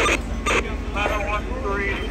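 Indistinct men's voices over a steady low rumble, with two brief knocks in the first half-second.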